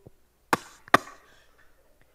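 Two sharp hand slaps less than half a second apart, the slap-on-the-hand penalty for saying the word "stuff".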